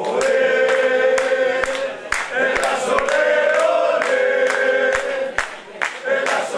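A group of people singing together in held, chant-like notes, with rhythmic hand-clapping about two or three claps a second.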